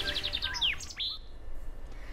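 Bird song: a fast trill of high chirps, then a few quick downward-sweeping whistles, all over about a second in.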